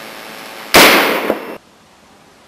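A single pistol shot about three quarters of a second in, the loudest sound here, with a short ringing tail that cuts off abruptly.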